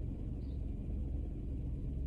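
Low, steady rumble inside a parked car's cabin.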